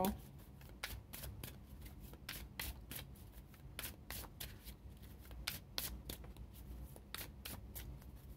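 A deck of tarot cards being shuffled by hand: a run of quiet, uneven card snaps and slaps, a few a second.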